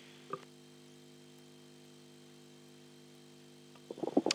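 Near silence from the open microphone system: a faint steady low hum, with one brief soft sound about a third of a second in.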